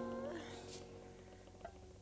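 Sustained notes from a live Balkan band, with accordion among them, dying away, with a brief upward pitch slide early on. They leave a near-silent pause.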